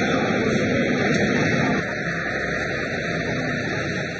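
Steady rushing noise. From about two seconds in it gives way to a lorry's engine running and traffic noise as the truck drives along a street.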